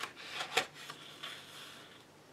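Paper of a large colouring-book page being handled: a few short rustles, the loudest about half a second in, then a soft rubbing that fades out.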